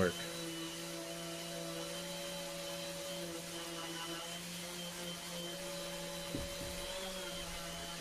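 Makita random orbital sander running steadily with an even hum, sanding excess gold spray paint off a pine surface. There is a brief tap about six seconds in.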